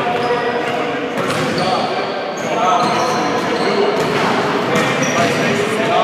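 Basketballs bouncing on a gymnasium's wooden floor under voices that echo around the large hall, with a few short high squeaks.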